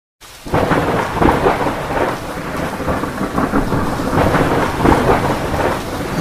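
Thunderstorm sound effect: thunder rumbling over steady rain, starting suddenly about half a second in and continuing at a loud level.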